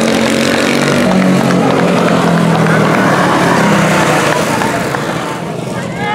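Quarter midget race car's single-cylinder Honda 160 engine running hard as the car goes by, its pitch sliding, easing off a little near the end.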